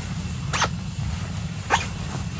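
Kitchen knife knocking down onto a plastic chopping board twice while cutting bread dough into pieces, the second knock the louder, over a steady low rumble.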